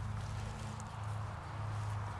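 A steady low hum under a faint background hiss.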